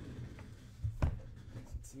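Scraping and rubbing from a boxed mini helmet being handled, over a low handling rumble, with a sharp tap about a second in.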